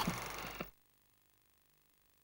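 A faint noisy tail of sound dies away within the first second, then dead silence.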